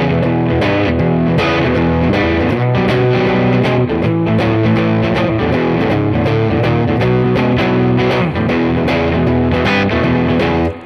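Epiphone Les Paul-style electric guitar playing a fast, high-energy shuffle blues riff over a backing track with a steady beat.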